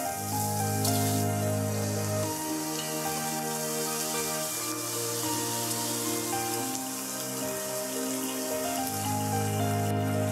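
Background music with long bass notes, over a steady sizzle of dried-chilli sambal paste frying in a pan, with beef broth ladled in about halfway through.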